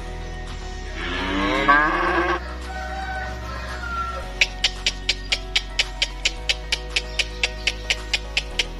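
A calf moos once, a single rising bawl about a second in, over background music; from about halfway the music carries a quick ticking beat, about four ticks a second.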